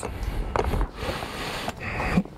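Rustling and rubbing of a stuffed roll-top dry bag's stiff fabric as it is handled, rolled closed and lifted.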